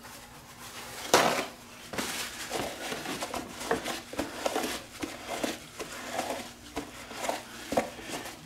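A paper towel is torn off the roll with a rip about a second in, then rustles and rubs as it wipes the inside of a plastic coffee-maker reservoir, with light knocks against the housing.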